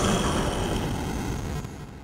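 Thunder sound effect: a rumbling tail that dies away over about two seconds.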